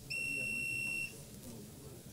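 A single electronic beep: one steady high-pitched tone lasting about a second, starting and stopping abruptly, over faint room murmur.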